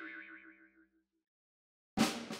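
The wavering, fading tail of a comic boing-like sound effect that closes a music sting, dying away within about the first second; then silence, broken by a sudden new sound right at the end as the scene changes.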